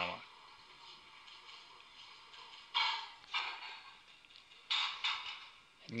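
Barbell with plates landing on a weightlifting platform on a failed attempt: two sudden, clattering hits about two seconds apart, each ringing briefly in a quiet hall.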